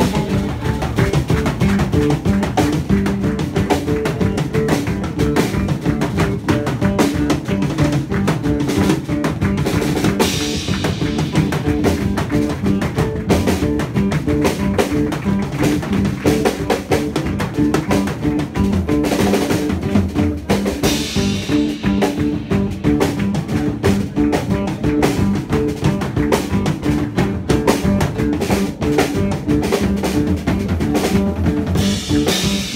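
Live band playing: a Tama drum kit keeps a busy beat with rimshots and bass drum under bass guitar and a plucked lute-like string instrument, with cymbal washes about ten and twenty seconds in.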